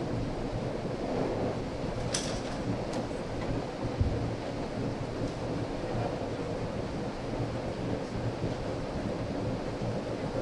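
Steady hum and hiss of electric fans running in a large hall, with a few faint clicks about two to three seconds in and a short low thump about four seconds in.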